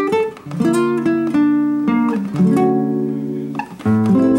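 Acoustic guitar playing a sequence of plucked chords, each left to ring before the next chord change, about every half second to a second.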